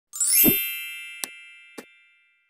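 Logo intro sound effect: a bright ringing chime with a low thump half a second in, fading away, followed by two short clicks.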